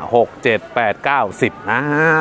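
Only speech: a man's voice talking, with a long drawn-out syllable near the end.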